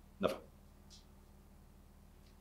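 A single curt spoken word, then quiet room tone with a steady low electrical hum and a faint breathy hiss about a second in.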